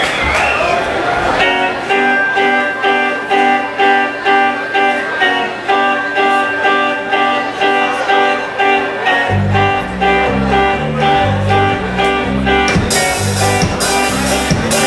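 Live band opening a song: a guitar plays a repeated chord pattern on its own, the bass guitar joins about nine seconds in, and drums with cymbals come in near the end.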